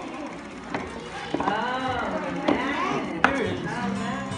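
Indistinct voices of a crowd with children, their pitch rising and falling, broken by a few sharp knocks. The loudest knock comes a little after three seconds in.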